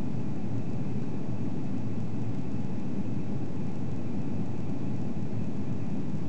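Steady low rumble inside the cabin of an Airbus A340-300 on approach: its CFM56 engines and the airflow over the fuselage heard by the window seat, with a faint high whine above the rumble.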